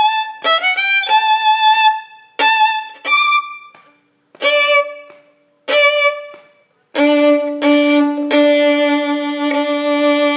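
Solo violin playing the closing bars of a string-orchestra first-violin part. A few quick notes with slides lead into four separate strokes, each fading away before the next, and from about seven seconds the closing chord: a two-note double stop, bowed again a couple of times and then held.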